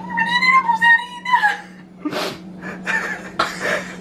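A woman's high-pitched, drawn-out squeal lasting about a second and a half, followed by breathy bursts of laughter: her reaction to a bad-tasting vegan flan.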